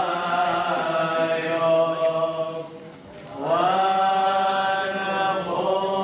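Syriac Orthodox liturgical chant sung in long, held notes, with a short break about three seconds in before the singing resumes.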